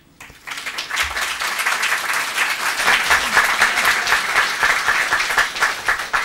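Audience applauding, swelling up over the first second and then holding steady.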